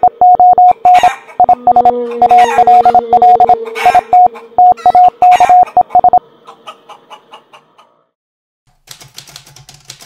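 Morse code beeps at one steady pitch, short and long, mixed with typewriter key clicks, until about six seconds in. After a short silence, faster typewriter clicking starts near the end over a low hum.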